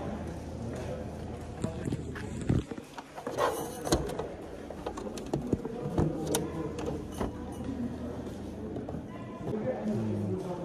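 Indistinct background voices, with a scatter of sharp clicks and knocks from items being handled on a stall table.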